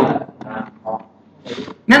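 A man's voice speaking in short, faint fragments with pauses between them, then picking up loudly again just before the end.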